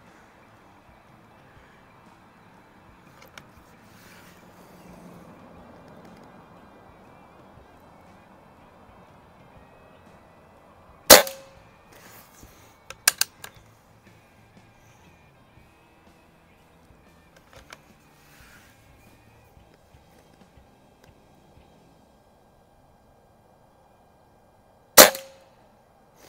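Two shots from a .22 Beeman QB Chief PCP air rifle, about 14 seconds apart, each a sharp crack with a short ring. A couple of lighter clicks follow the first shot as the bolt is worked to load the next pellet.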